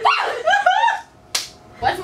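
Girls laughing and exclaiming with rising, squealing voices, then a single sharp smack about a second in, like a hand slap.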